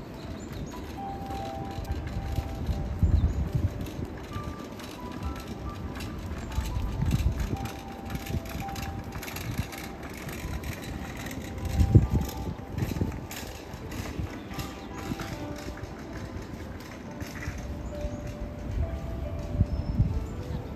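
Outdoor city plaza ambience: a faint melody of short held notes, with low rumbling swells underneath, the strongest about twelve seconds in.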